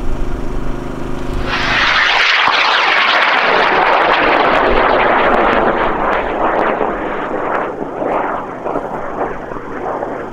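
High-power rocket motor launching: a sudden loud roar starts about a second and a half in, holds, then slowly fades with sharp crackles as the rocket climbs away.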